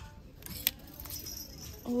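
Metal hooks of plastic clothes hangers being pushed along a metal clothing rail, clicking and scraping, with one sharp click partway through.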